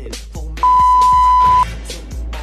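A workout interval timer gives a steady, high electronic beep lasting about a second, the long final tone of a countdown that marks the switch between work and rest intervals. Hip hop music plays throughout.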